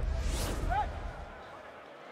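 Broadcast replay-transition sound effect: a rising whoosh over a deep low boom, fading out within about a second and a half.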